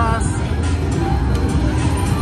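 Electronic slot machine music and sound effects over the steady din of a casino floor, as the reels land a big win near the end.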